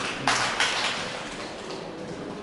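A quick exchange in a boxing bout: a sharp glove smack, then two short hissing bursts of the kind boxers make breathing out through their teeth as they punch. The hall's steady background is left behind.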